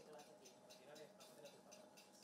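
Faint, even ticking at about four ticks a second, under distant, indistinct voices.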